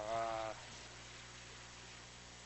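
A man's drawn-out hesitant "uh" in the first half second, then low room tone with a steady faint hum.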